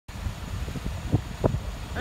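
Wind buffeting the phone's microphone, an uneven low rumble, with two brief knocks about a second in.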